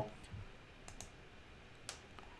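Faint computer mouse clicks: a quick pair about a second in and a single click near the end, over quiet room noise.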